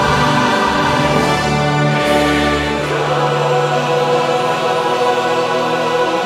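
Large mixed choir singing long held chords with orchestral accompaniment; the deep bass drops away about three seconds in.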